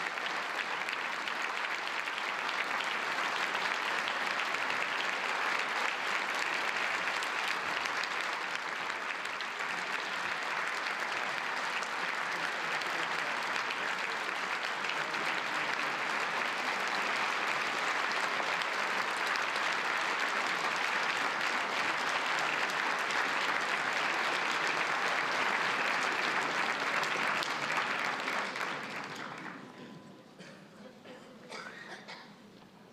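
A large audience applauding steadily, the clapping dying away over the last couple of seconds.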